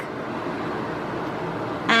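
Steady background hiss with no distinct sound events: the recording's room noise between words.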